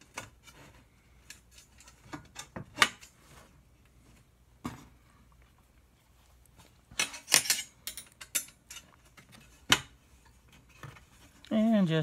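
Aluminium extrusion rail and small screws and nuts being handled and fitted: scattered light metal clicks and scrapes, with a cluster of sharper clinks about seven seconds in.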